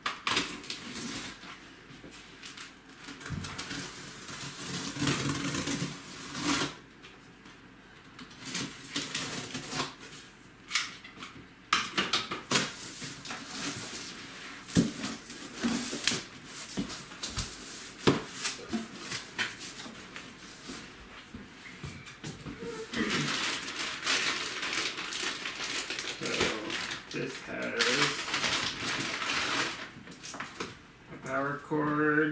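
A large cardboard shipping box being opened by hand: flaps pulled apart, with irregular sharp crackles and tearing sounds from the cardboard and packing tape. Near the end comes a denser, steadier rustle of plastic wrapping as the packed parts are lifted out.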